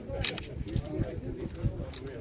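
Indistinct chatter of several people talking at once, with a few brief sharp clicks or rustles, one near the start and one around the middle.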